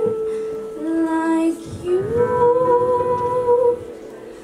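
A girl singing into a handheld microphone in long, held notes: a note, a lower note, then a slide up into a note held for about a second and a half before it fades near the end.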